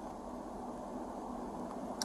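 Steady low hum and rumble inside a Chevrolet patrol vehicle's cabin with the vehicle idling.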